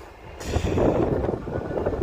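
Strong storm wind buffeting the microphone: an irregular low rumble that dips for a moment and builds again about half a second in.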